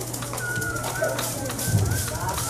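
Maracas shaken in a run of quick, sharp strokes, with a high whistled tone held over them for about half a second in the middle and again briefly near the end.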